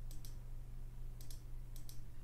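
Computer mouse clicked three times, each a quick press-and-release double click, faint over a steady low electrical hum.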